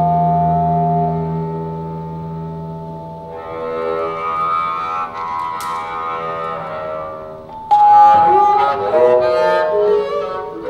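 Bowed double bass holding a long low note under sustained vibraphone tones; the low note ends about three seconds in. Near the end a burst of loud vibraphone notes struck with mallets comes in over the bass.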